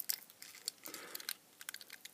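Faint handling noise: light crinkling of sticky tape and a few small clicks as fingers turn over a small lithium cell and its circuit board.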